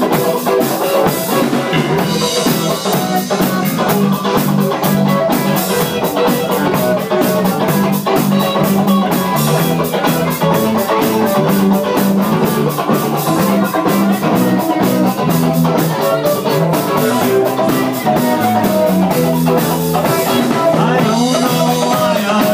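Live rock band playing a loud instrumental passage: electric guitars over a drum kit keeping a steady beat, with no singing.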